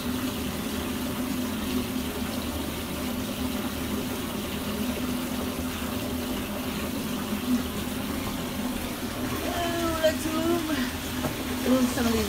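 Bath faucet running: water pouring from the tub spout into a foam-covered bathtub as it fills, a steady rushing sound with a low hum underneath.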